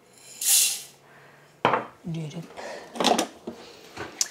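Spelt grains poured from a small glass bowl into a Thermomix TM6's stainless steel mixing bowl: a brief rushing rattle lasting about half a second. It is followed by a few sharp clattering knocks of kitchenware being handled.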